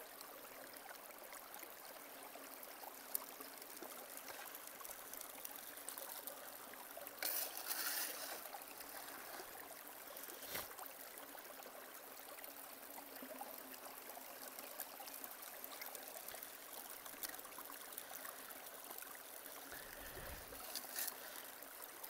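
Faint, steady running water: a gold sluice box set to a very slow flow, water trickling over its riffles. It briefly grows louder about seven seconds in, and there is a single small click about halfway.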